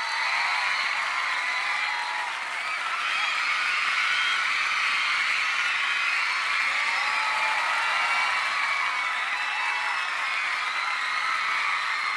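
Audience applauding and cheering at a steady level, with many high voices overlapping in whoops and shouts.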